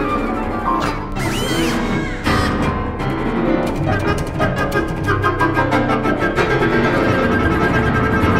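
Contemporary chamber ensemble of flute, harp, cello and piano playing a dense, loud passage with the cello prominent. About three seconds in, a fast run of repeated strokes sets in and breaks off a few seconds later.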